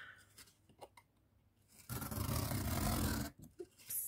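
Craft knife and hands handling corrugated cardboard: a steady scraping rub about two seconds in, lasting about a second and a half, then a short tick near the end as the blade meets the steel ruler.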